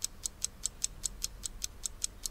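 Clock-ticking sound effect: quick, crisp, even ticks, about five a second, played quietly in a pause.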